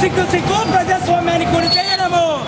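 Group of men chanting protest slogans, with voices stretching out long held syllables in a chant-like rhythm.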